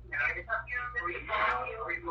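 Speech heard over a telephone line, narrow and thin-sounding, over a steady low hum.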